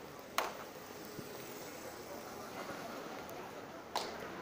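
Steady city street background noise, with a sharp click about half a second in and another near the end.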